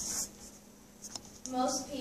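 A brief scratchy rustle at the very start and a single sharp click a little past the middle, in a small, quiet room. A woman starts speaking near the end.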